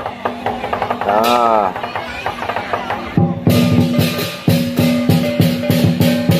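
Lion dance music: drum and cymbal beats, light and scattered at first, then a dense, steady, louder rhythm kicks in about three seconds in.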